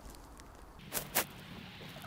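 Two short crunches of packed snow about a second in, a fraction of a second apart, as someone kneeling in it shifts their weight, over a faint steady background.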